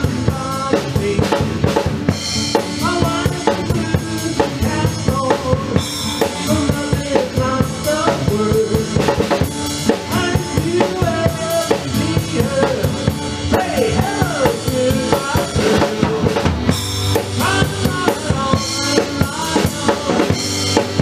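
A small band playing a song: a drum kit keeps a steady beat with bass drum and snare strokes under strummed acoustic-electric guitar, with a pitched melody line over the top.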